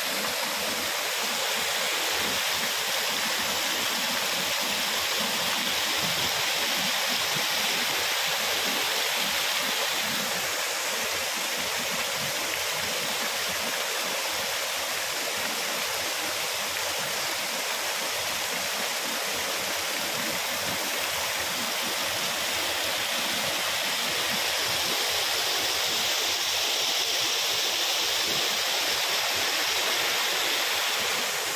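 Water rushing steadily through an open sluice gate and splashing over a low concrete weir into a small canal: a continuous, even rush with no pauses.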